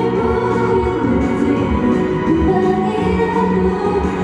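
K-pop dance song played loud through an arena sound system, with a group of female voices singing over a steady low beat.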